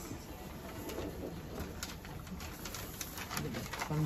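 Light clicks and rustles from a clear plastic pet carrier and papers being handled.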